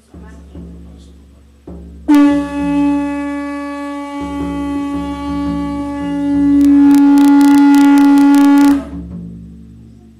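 Conch shell trumpet (caracol) blown in one long held note from about two seconds in. It swells louder for its last two seconds and cuts off just before the end. A couple of thumps come before it.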